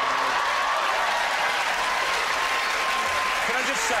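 Studio audience applauding, loud and steady, with a man's voice starting up near the end.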